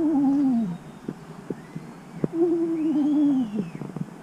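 A ghost-like "woooo" moan made twice, each a wavering, drawn-out tone that sinks in pitch at its end, with a few short clicks in the gap between them.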